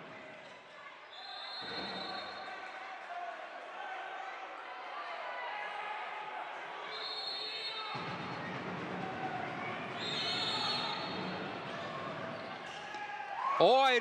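A handball bouncing on a wooden indoor court during play, with crowd voices echoing in the sports hall. A few short high squeaks come through, about a second in, near the middle and about two-thirds of the way in.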